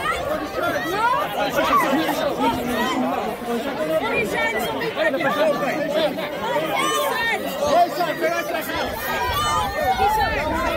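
A close crowd of fans talking and calling out over one another in a dense, continuous babble of voices, with a few higher-pitched shouts about seven seconds in and near the end.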